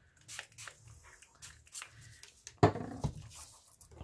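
A few short spritzes from a fine-mist spray bottle of 70% isopropyl alcohol, then a louder knock about two-thirds of the way in.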